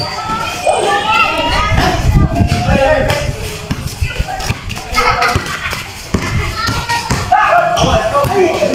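Overlapping shouts and chatter from basketball players and onlookers, with repeated thuds of a basketball bouncing and players' feet on a concrete court.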